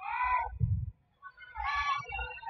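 Two short, high-pitched shouts during a volleyball rally in a gym, one at the start and one near the end, with dull low thuds between them.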